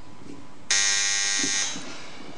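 An electric door buzzer sounding once: a harsh buzz that starts abruptly a little under a second in, lasts about a second and then tails off.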